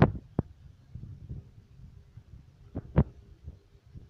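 Plastic DVD cases being handled and set down: a few sharp knocks, the loudest right at the start and about three seconds in, over low rustling handling noise and a faint steady hum.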